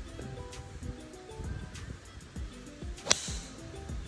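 A single sharp crack of a golf club striking the ball off the tee about three seconds in, over background music with a slow stepped melody.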